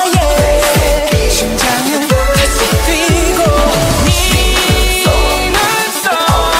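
Pop song with a wavering sung melody over deep electronic kick drums that drop sharply in pitch, with synth tones layered above.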